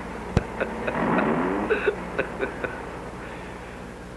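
A man's quiet chuckling in short bursts, with a rising voiced 'hm' about a second in, over a steady low hum. A sharp click comes just before the chuckling.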